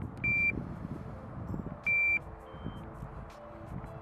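Electronic carp bite alarm on a rod pod giving two short single-tone high beeps about a second and a half apart as the rod and line are handled, followed by a fainter, higher-pitched beep, over a low rumbling noise.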